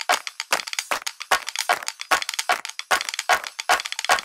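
A percussion break in a folk-style film song: sharp hand claps in a quick, even rhythm, about four a second, with no singing or melody.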